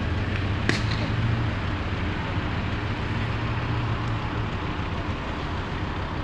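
A car burning fully ablaze, a steady rushing noise under the low steady hum of a nearby idling car engine, with one sharp crack less than a second in.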